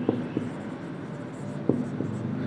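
Writing by hand: a soft, steady scratching across the writing surface, with a few light taps, one near the end.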